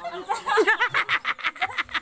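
People laughing in a fast run of short ha-ha bursts, building up about half a second in and carrying on to the end.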